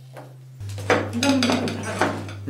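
China plates, bowls and spoons clinking and clattering on a table in a quick run of small knocks, starting about a second in, with a voice under them.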